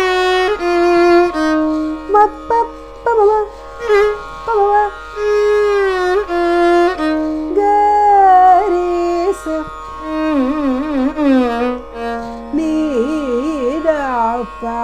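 Carnatic violin playing a slow swara passage in raga Bhairavi, one melodic line gliding between notes with gamaka ornaments. In the last few seconds the notes are shaken in quick wavering oscillations, all over a steady drone.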